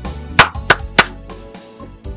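Three sharp knocks on a hut door in quick succession, over soft background music.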